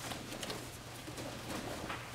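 Soft, irregular snaps and thuds from a group of taekwondo students kicking in uniform on mats, over a steady low hum.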